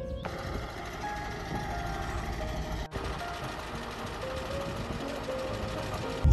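Heavy truck engine running steadily, with faint music under it.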